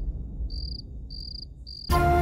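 Crickets chirping: short pulsed high chirps, about two a second, over a low rumble that fades away. This is the night ambience laid over the moonlit-sky shot.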